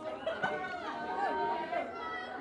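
Indistinct talking and chatter from several voices in a large room, with a single brief thump about half a second in.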